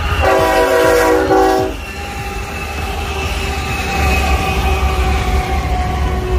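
Diesel locomotive air horn sounds one blast of about a second and a half from a GE C45ACCTE leading a freight train, followed by the steady rumble of the passing locomotives and double-stack container cars on the rails.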